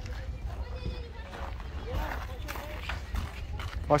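Faint, indistinct voices over a steady low rumble on the microphone, followed right at the end by a close voice.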